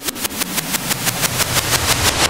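Logo-sting sound effect: a rapid, even run of sharp clicks, about eight a second, over a low drone.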